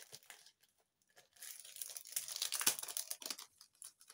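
Crinkly plastic packaging being handled: a clear packet of adhesive rhinestones rustling and crackling for about two seconds, starting about a second in.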